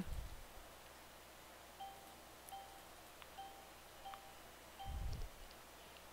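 A faint run of about five short, same-pitched electronic chime tones over a few seconds, with a low soft thump near the end.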